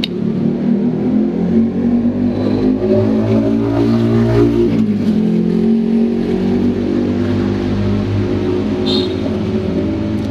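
A motor engine running steadily with a low, pitched hum; its pitch dips and rises again about five seconds in, as if it is revved.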